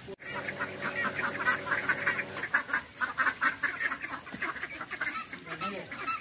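A flock of domestic ducks quacking in a rapid, overlapping chatter.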